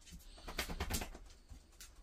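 A dog's brief, low, pulsing grumble lasting under a second, about halfway in.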